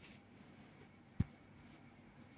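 Quiet room tone with a single short click a little over a second in.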